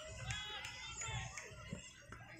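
Faint, distant voices of children and adults calling out across an outdoor football pitch, in short broken calls.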